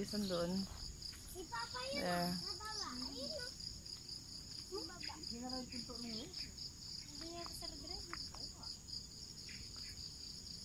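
A steady, high-pitched chorus of insects chirring, with faint voices talking now and then.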